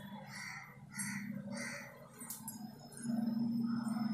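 A bird calling in the background, three short calls about two-thirds of a second apart, followed by a steady low hum that comes up about three seconds in.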